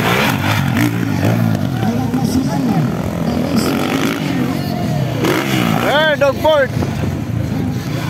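Motocross dirt bike engines revving up and down as the bikes race over the dirt track. A loudspeaker announcer's voice cuts in briefly about six seconds in.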